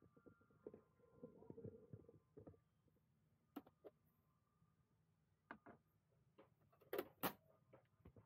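Near silence with a few faint clicks, then two sharp clicks about a third of a second apart near the end as a plastic access hatch on a camper-van panel is shut and latched.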